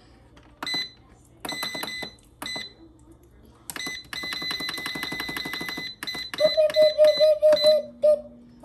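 PowerXL air fryer's control panel beeping as its buttons are pressed to set the time and temperature: a few single beeps, then a fast, even run of beeps for about two seconds. Near the end a lower pulsing tone comes in.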